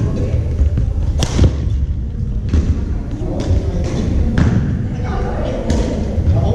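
Badminton rackets striking a shuttlecock during a rally: sharp hits, about six in a few seconds, with thuds under them.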